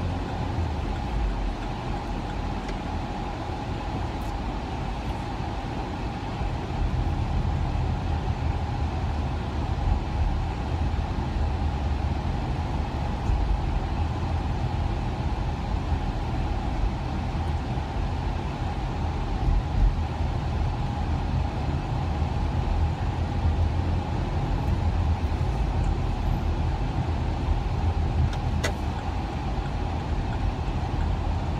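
Cabin noise of a car driving on a freeway: a steady low rumble of engine and tyres on the road, with a faint steady hum running through it.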